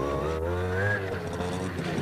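A small trials motorcycle engine running, its pitch wavering up and down with the throttle, then steadier.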